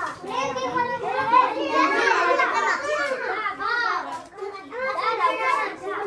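A group of children chattering and calling out over one another, their high voices overlapping, with a brief lull a little past four seconds in.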